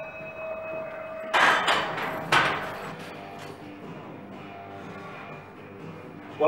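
Background music plays throughout. Three sharp metallic clanks come between about one and a half and two and a half seconds in, each with a short ring: a loaded steel barbell and its plates knocking into the squat rack as it is racked.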